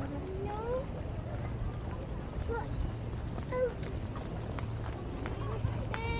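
Children's voices and short calls a little way off, with rising, high-pitched inflections, over a steady low rumble of outdoor background noise.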